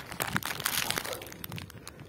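Rustling and crinkling of a bag being handled by hand, with scattered small clicks and a louder crinkly burst about half a second to a second in.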